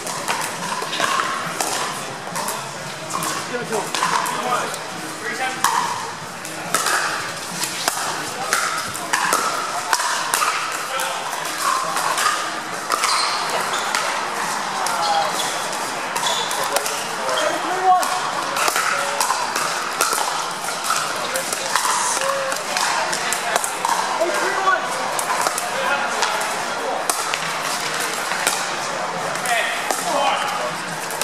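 Sharp pops of pickleball paddles striking plastic balls, a steady scatter of them throughout from several courts, over the chatter of players and spectators in a large indoor hall.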